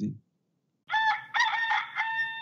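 Rooster crowing once, a cock-a-doodle-doo starting about a second in and ending on a long held note.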